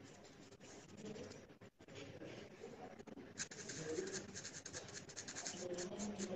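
Pencil scratching across drawing paper in quick, short strokes, faint at first and busier and louder from about halfway in, as tone is laid onto a charcoal portrait.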